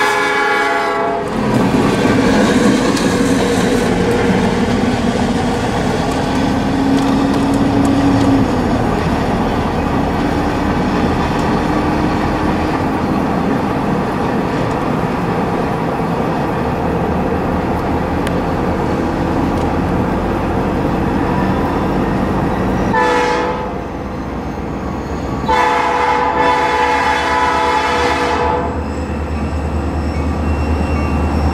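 Norfolk Southern EMD SD40-2 diesel locomotive's air horn sounding, cutting off about a second in. Steady train and road running noise follows, heard from inside a moving car, with a short horn blast about three quarters of the way through and a longer blast of about three seconds near the end.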